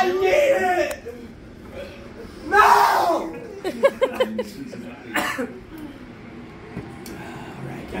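A couple of harsh coughs among voices, the throat reacting to the heat of a super-hot pepper-coated peanut.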